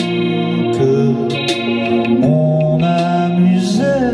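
Live band music: a man singing long held notes over electric guitar, with short percussive hits every second or so.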